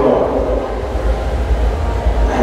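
A steady low rumble picked up through a lectern microphone on a church sound system, with a man's voice trailing off near the start.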